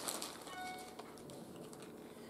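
Faint rustle of a plastic bag and light clicking of wooden matchsticks as one is picked out of the bag, dying away within the first second.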